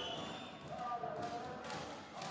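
Sound of a volleyball rally in a sports hall: crowd voices, with a few sharp thuds of the ball being played starting about a second in.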